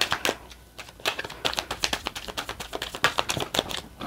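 A deck of tarot cards being shuffled by hand: a rapid run of crisp card flicks and clicks, with a short pause a little under a second in.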